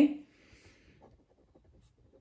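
Faint, irregular scratching of a pen writing on paper.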